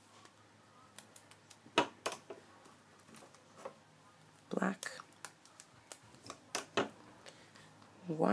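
Light, scattered plastic clicks and taps as rubber loom bands are stretched over the pegs of a plastic band loom.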